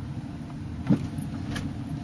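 Steady low rumble of a car's engine and tyres heard from inside the cabin as it drives slowly along an unpaved campground road, with one brief sharp knock about a second in.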